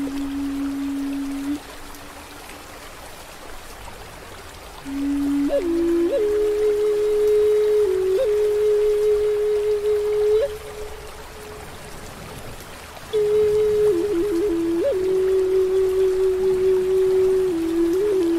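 Native American flute playing slow, long-held low notes with quick upward grace-note flicks: one note ends about a second and a half in, and two more phrases follow after pauses of a few seconds. Underneath is a steady hiss of rain and flowing stream water.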